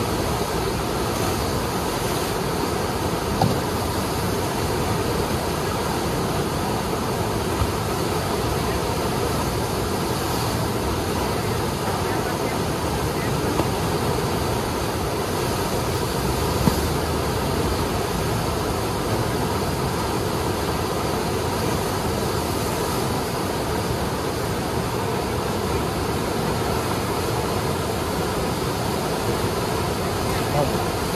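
Steady rush of the Eisbach's standing river wave, white water churning over the step in the channel, with a few faint short knocks.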